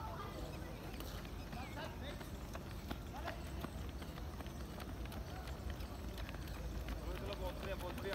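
Quick, light running footsteps of a group of runners on a synthetic rubber athletics track, the footfalls growing denser and louder toward the end as runners come close. Voices can be heard in the background.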